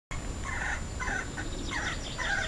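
Several faint, short bird calls, about every half second, over a steady low background noise.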